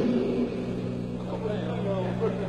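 Indistinct voices talking on a soundcheck stage over a steady low hum. The voices grow a little more audible near the end.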